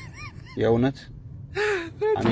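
Speech: a man's voice in short bursts with pauses between them.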